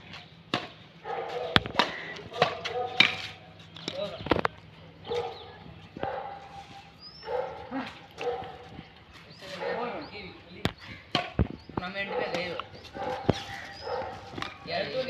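Badminton rally: several sharp pops of rackets striking a shuttlecock at irregular intervals, with players' voices between the hits.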